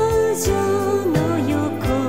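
A 1980s Japanese pop song: a female voice sings a melody with vibrato, gliding between notes, over a band with a steady drum beat.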